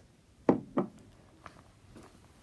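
Two short knocks about a third of a second apart, then a faint tap: objects being handled on a wooden tabletop as a long-nosed lighter is picked up.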